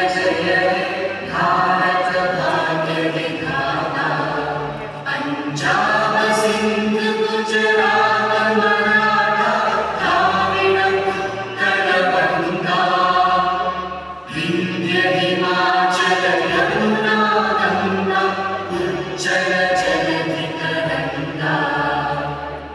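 A choir singing what is most likely a national anthem, in long held phrases with brief pauses between lines.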